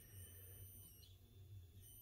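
Near silence, holding only a faint low electrical hum and a thin, steady, high-pitched electronic whine from the grid-tie inverter setup. About a second in, the whine steps up in pitch as the inverter kicks in and starts drawing power.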